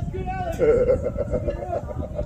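A voice shouting across the field, one drawn-out, wavering call starting about half a second in and lasting about a second, over a steady low rumble.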